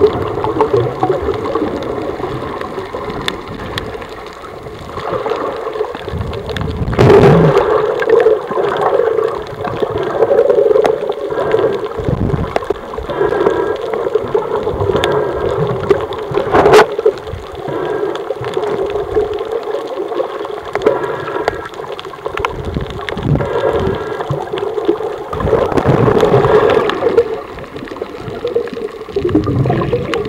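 Underwater water noise around a camera, steady gurgling and rushing with a few louder swells of bubbling, and a sharp click about 17 seconds in.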